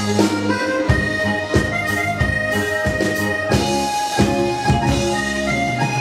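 Live band playing the instrumental introduction of a Mandarin pop ballad: a held, reedy lead melody over a steady beat of about two strikes a second.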